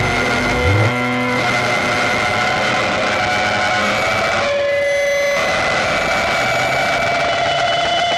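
Psychedelic rock band's full-band passage cuts off about a second in, leaving sustained, effects-laden electric guitar tones ringing over a noisy wash with no drums.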